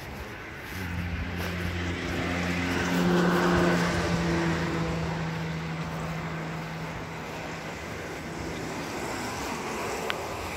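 A motor vehicle passing on the adjacent road: a steady engine hum and tyre noise build up from about a second in, peak about three to four seconds in, then fade away.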